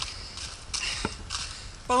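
Footsteps walking on a dirt trail strewn with dry leaves, with one sharp click about a second in.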